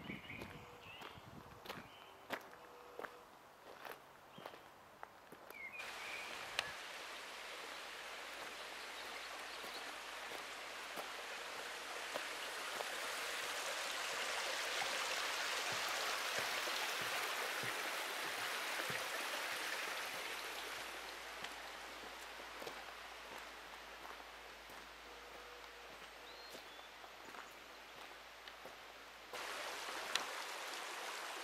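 Footsteps on a gravel path for the first few seconds, then running stream water that grows louder through the middle and fades again toward the end.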